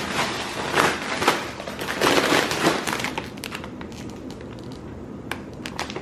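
Crinkling and crackling of plastic chip bags being handled and shifted about, dense for the first three seconds, then sparser crackles.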